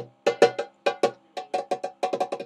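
Hand drum struck with bare hands in a quick, syncopated pattern of sharp strikes, about five a second. Each strike leaves a short, pitched ring.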